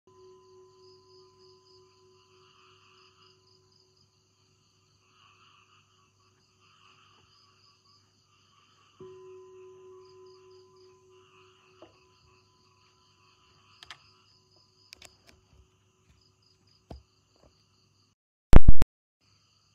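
Very quiet: faint insects chirring in soft, repeating pulses. About nine seconds in, a soft ringing tone starts suddenly and fades. A few faint clicks follow near the end.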